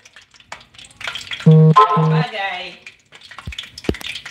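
Spoonful of marinad fritter batter going into hot oil, sizzling and crackling from about a second in. A voice gives two short held tones in the middle, louder than the frying.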